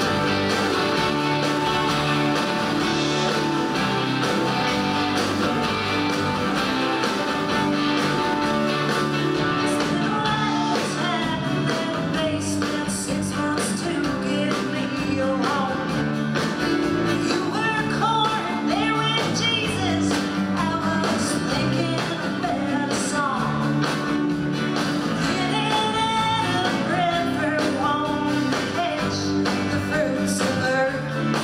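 Live roots-rock band playing a song with electric and acoustic guitars, fiddle and drums. A woman's lead vocal comes in about ten seconds in over the band.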